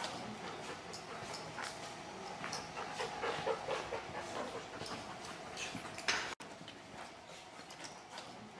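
Yellow Labrador detection dog pawing and scratching at a black plastic bag wedged behind a window grille, with a run of short whines about three seconds in. The pawing is its alert on a hidden package. The sound breaks off briefly a little past six seconds.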